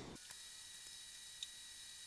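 Near silence: faint steady hiss of room tone, with one faint tick about one and a half seconds in.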